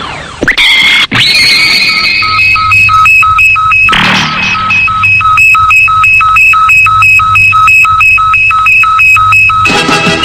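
Ultraman color timer warning sound: a rapid electronic beeping, about three beeps a second, that starts about two seconds in and runs to the end, after a falling synth sweep, with a rushing burst of noise about four seconds in. It signals that an Ultra warrior's energy is running out.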